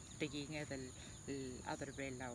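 A woman speaking, over a steady high-pitched insect drone.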